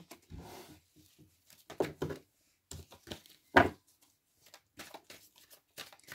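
Tarot cards being handled on a table: a series of short rustles and snaps of the card stock, the loudest a sharp snap about three and a half seconds in.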